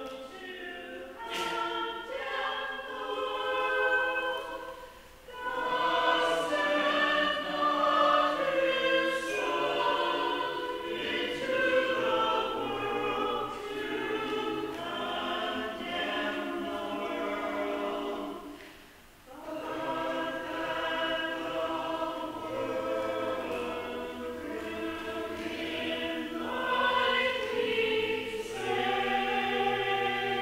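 A hymn sung by voices together in chorus, in long sustained phrases, with brief breaks between phrases about five seconds in and again near nineteen seconds.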